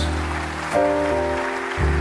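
Live jazz band playing a slow ballad between sung phrases: held chords over a sustained double-bass note. The chord changes about three-quarters of a second in, and the bass moves to a new note near the end.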